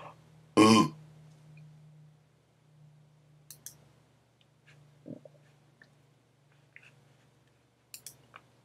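One short, loud throat sound from a person, with a wavering pitch, about half a second in. After it come a few faint mouse clicks, over a low steady hum.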